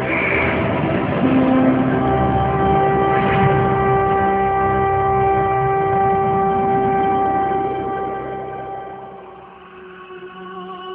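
Intro music: a sustained, organ-like chord held for several seconds over a low rumble, fading out near the end.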